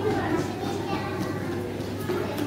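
Indistinct voices talking in the room, over a steady low hum.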